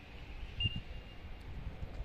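Wind buffeting an outdoor microphone in uneven low gusts, with a short, faint high beep-like tone about half a second in.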